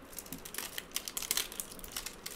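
Clear plastic shrink-wrap film on a cardboard phone box crinkling and crackling in quick, irregular clicks as fingers pick at it and peel it off.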